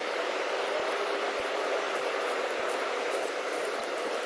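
Steady, even outdoor rushing noise, with a few faint soft knocks scattered through it.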